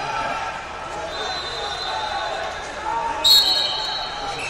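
A referee's whistle gives a short, loud, high blast about three seconds in, starting the wrestling period, over the steady hubbub of many voices in a large tournament hall.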